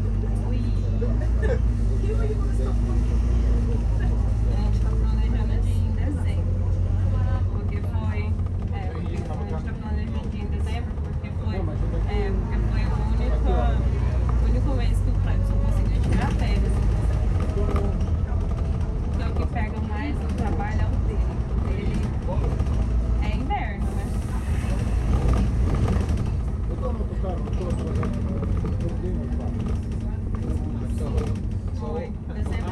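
Steady low rumble of a London double-decker bus's engine and running gear as it drives along, heard from inside on the upper deck, with passengers talking throughout.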